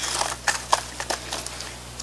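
Potting soil mixed with bark and perlite being scooped by hand and dropped into a black plastic nursery pot: a crackling rustle with scattered light ticks, thinning out toward the end.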